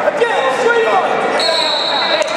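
Several voices shouting over one another in a large, echoing gym hall, typical of spectators and teammates calling out during a wrestling bout. A short, steady high tone comes in about one and a half seconds in and lasts about half a second.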